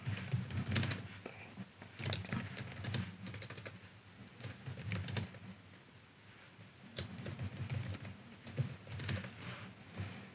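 Computer keyboard typing in short bursts of keystrokes, with a pause of about a second and a half just past the middle.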